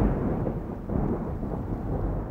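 Deep rolling rumble of thunder used as a sound effect, easing off and swelling again briefly about a second in and near the end.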